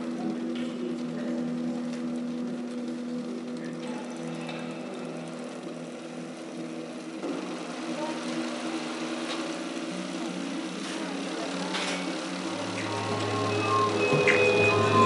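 Electronic drone from a loudspeaker: several steady low tones held together. A deeper hum joins near the end as the sound grows louder.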